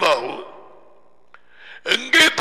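A man's voice trails off with a falling pitch, then a short pause and a soft in-breath before he speaks again near the end.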